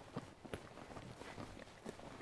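A few faint footsteps on dirt ground, soft separate steps over quiet outdoor background noise.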